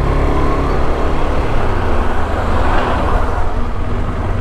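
Single-cylinder engine of a KTM 390 Adventure motorcycle running at low speed on a dirt road, with a wider rush of truck and road noise swelling around the middle as it passes a parked truck.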